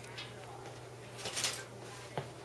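Quiet room tone with a steady low electrical hum, and a faint brief rustle of hands handling the meat a little past halfway.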